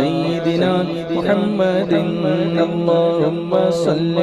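A man's voice singing a devotional Urdu kalam (naat) in long, ornamented held notes that glide up and down, over a steady low drone.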